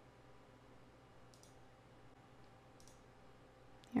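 Two faint computer mouse clicks, about a second and a half apart, over a low steady hum.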